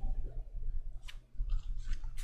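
Faint, brief scratching and rustling from a small mixed-hair ink brush touching rice paper and from hands moving over the paper, over a low steady hum.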